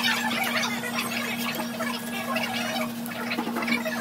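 Restaurant din: a busy jumble of short, high-pitched sounds over a steady low hum.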